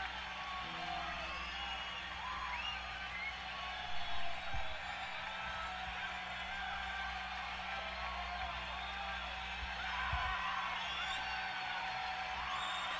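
A gap in the band's playing: faint concert crowd cheering, with scattered whoops and whistles, heard through a soundboard recording over steady amplifier hum. A couple of low thumps come about four and ten seconds in.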